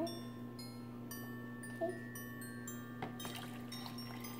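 Light background music of bell-like chiming notes.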